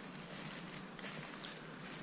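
Quiet outdoor background: a faint steady hiss with a few soft ticks and rustles.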